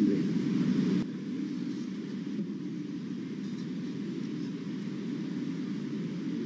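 Indistinct voices that cut off about a second in, then a steady low rumble of room noise.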